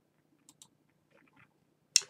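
Computer mouse button clicking: a couple of faint clicks about half a second in, then one sharp, loud click near the end as a software button is pressed.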